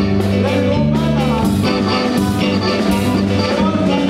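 Live norteño-style band music: an accordion plays held melody notes over a walking electric bass line, electric guitar and a steady drum-kit beat.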